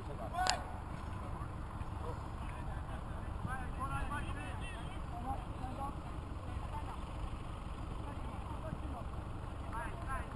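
Open-air football match ambience: a steady low rumble of wind on the microphone with faint, indistinct shouts from players on the pitch, and one sharp knock about half a second in.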